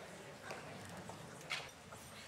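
Faint footsteps on a hard stage floor: a few sharp heel clicks about a second apart.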